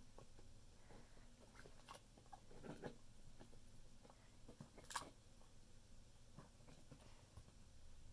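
Near silence, with faint sticky squelches and small clicks of slime being pressed by fingers into a balloon over a plastic bottle's mouth; one sharper click about five seconds in.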